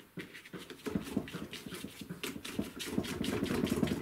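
Bristle brush dabbing and scrubbing oil paint onto primed paper: a quick, irregular run of scratchy taps that thickens about a second in.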